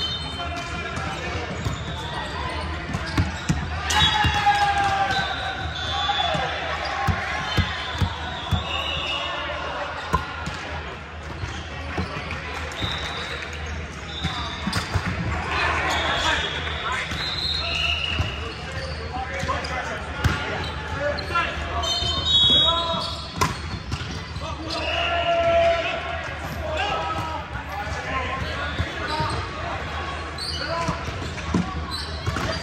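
Echoing sports-hall ambience of indoor volleyball on hardwood courts: many voices and shouts, volleyballs being struck and bouncing on the floor as sharp knocks, and short high-pitched squeaks scattered throughout.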